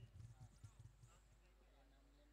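Near silence: faint background with a few soft low thumps in the first second, then almost nothing.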